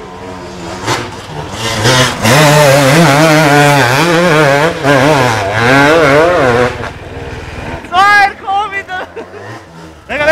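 KTM enduro dirt bike engine revving hard up and down as the rider works the throttle climbing a steep, leaf-covered slope. The engine fades about two-thirds of the way through, and a short shout follows near the end.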